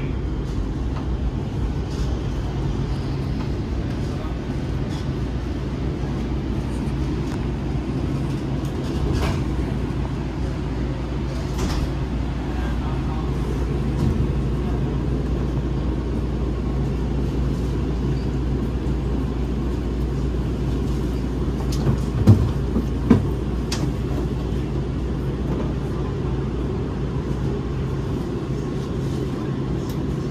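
Steady low hum inside a stationary light-rail car, its onboard equipment running while it stands at a station with the doors open. Two brief knocks come a little over 20 seconds in.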